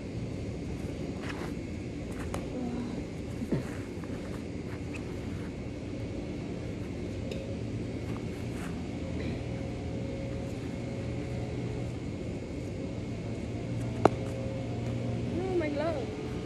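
A steady low mechanical hum, with a single sharp leather pop of a baseball smacking into a catcher's glove about 14 seconds in and a softer knock a few seconds in.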